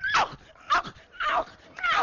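A man imitating a dog's yelps with his voice: four short, high yelps, each falling in pitch, about half a second apart.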